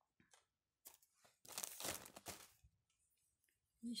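Hands pulling a tuft off a length of wool roving: a few light clicks, then about a second of dry tearing rustle in the middle.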